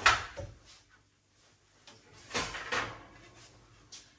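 An oven door opened and a metal baking tray pulled out of the oven: a sharp knock at the start, then a short rattling slide about two and a half seconds in.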